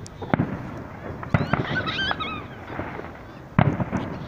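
Aerial fireworks shells bursting: about four sharp bangs, the loudest near the end.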